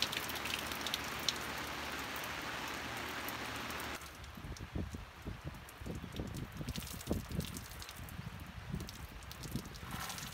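Steady rain, with water dripping off a canvas boat awning, giving an even hiss. About four seconds in it cuts to uneven low gusts of wind buffeting the microphone, with faint scattered drips.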